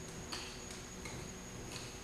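Nunchuck clicking faintly as it is caught and switched from hand to hand, a few unevenly spaced ticks.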